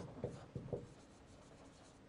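A marker pen writing on a white board: a few faint, short strokes in the first second, then near silence.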